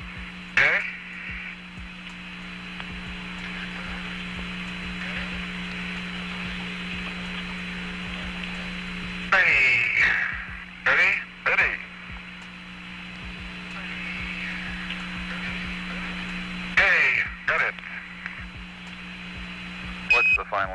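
Apollo air-to-ground radio loop: a steady hiss with a low hum. It is broken by brief loud bursts of transmission, once just after the start, a few times around the middle and once near the end.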